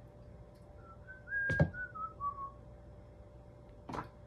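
A man whistling a short tune of about six notes, rising and then stepping down in pitch. A sharp knock comes about halfway through and is the loudest sound, and a click follows near the end.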